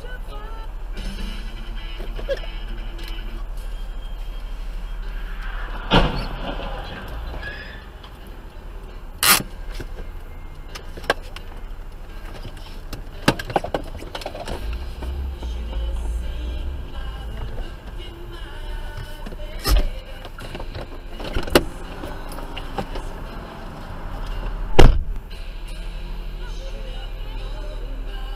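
Background music over dashcam audio from inside a car at an intersection where a collision happens, with several sharp bangs and knocks; the loudest comes near the end.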